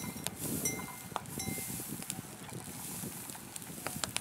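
Outdoor field ambience with a rumbling wind-like haze and scattered sharp clicks and taps, with two brief high steady tones about a second in.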